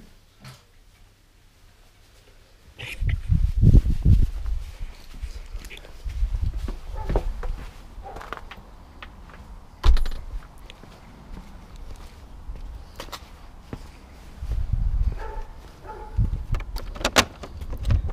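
Camera handling and walking noise: irregular thumps and rustles, a sharp knock about ten seconds in, and a few clicks near the end.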